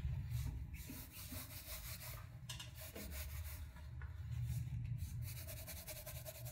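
A clean paper towel pressed and rubbed over wet watercolor paper: faint, repeated scuffing and rustling that comes and goes. It is blotting the paper dry and lifting the paint off to lighten the area.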